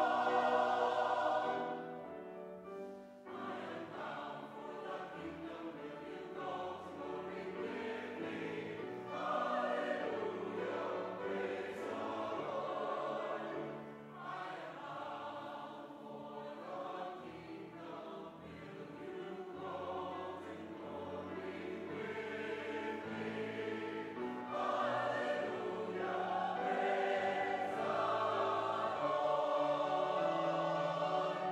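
Church choir of mixed men's and women's voices singing sustained chords, quieter for a stretch early on and swelling louder again near the end.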